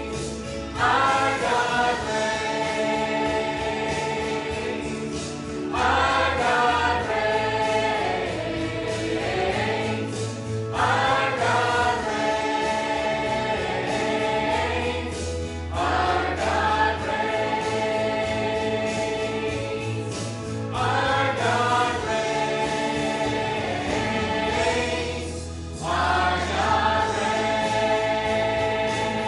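Mixed church choir singing a gospel song, its sung phrases starting again about every five seconds over low held accompaniment notes.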